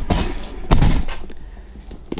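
Rustling handling noise with one dull thump about three-quarters of a second in, fading away afterward.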